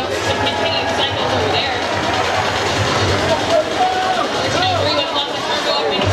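Spectators in a packed gymnasium shouting and cheering, many voices overlapping in a steady loud din, over a low steady hum.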